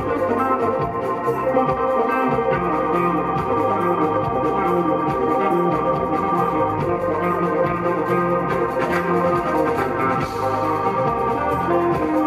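Live funk band playing instrumentally: held organ chords over a moving electric bass line, steady and loud.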